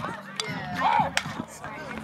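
Players and spectators shouting during a softball play, with one high call about a second in. Two sharp knocks cut through, one a little under half a second in and one just after a second.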